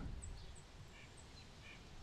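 Quiet room tone in a pause between speech, with a few faint, short high-pitched chirps scattered through it.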